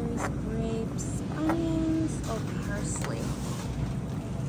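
Supermarket ambience: a steady low rumble with faint, indistinct voices in the background and a few light clicks, as a loaded shopping cart is pushed through the store.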